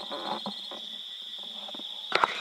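Insects droning steadily at one high pitch, with scattered short, irregular noises under the drone.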